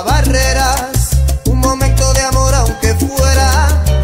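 Salsa music, loud and continuous, with a bass line of held low notes broken by short gaps beneath a pitched melody line.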